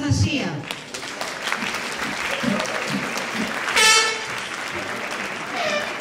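Audience applauding steadily, with voices calling out over the clapping; a single loud shout stands out about four seconds in.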